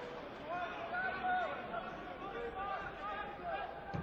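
Raised voices calling out across a football pitch over steady open-air stadium background, with one dull thud of a football being kicked just before the end.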